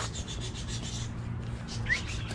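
Small birds in an aviary chirping, with one short rising chirp near the end. Under them run a low steady hum and rubbing from the harness-mounted camera.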